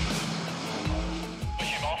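Jet ski engine running at speed with water rushing and spraying, under background music.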